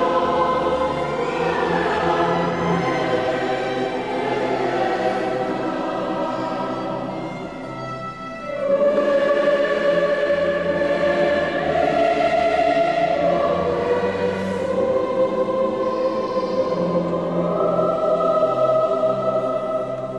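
Choir singing sustained chords. About eight seconds in it dips briefly, then swells into louder held chords.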